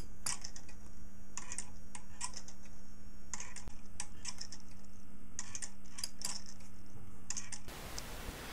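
Homemade Hipp-toggle pendulum clock movement running. The toggle on the swinging pendulum ticks against the dog of a microswitch, giving clusters of light clicks roughly once a second over a steady low hum. The sound cuts off near the end.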